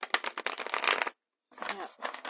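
Riffle shuffle of a stiff, brand-new oracle card deck: a dense, fast flutter of card edges springing off the thumbs for about a second, with a second flutter of cards starting right at the end.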